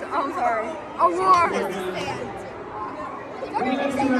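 Only speech: girls' voices chattering and exclaiming close to the microphone, words unclear, in a large echoing hall.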